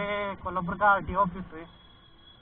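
A man's voice without clear words: one held sound, then several short bursts, fading out about a second and a half in. Beneath it runs the low steady note of the Bajaj Pulsar 220F motorcycle he is riding.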